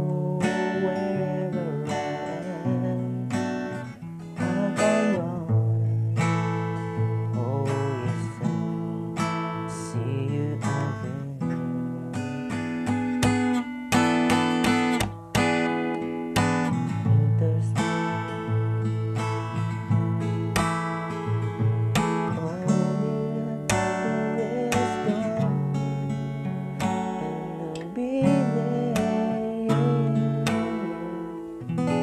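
Steel-string acoustic guitar with a capo, its chords strummed in a steady rhythm through the chorus chord progression.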